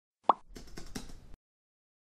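Intro sound effects: a short pop with a quick upward sweep, then under a second of rapid keyboard-typing clicks as a web address is typed into a search box.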